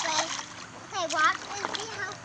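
A baby's hands slapping the shallow water of a small plastic wading pool, splashing in short bursts, with a child's high voice over it about a second in.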